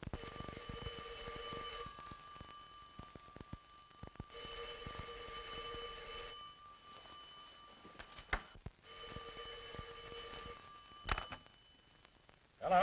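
Electric telephone bell ringing three times, each ring about two seconds long with a couple of seconds' pause between. A sharp click comes just before the third ring and another shortly after it.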